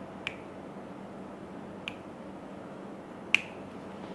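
Three sharp pops of finger knuckles cracking as a massage therapist pulls the client's fingers one at a time, spaced a second or more apart, the last the loudest. Under them is a steady low room hum.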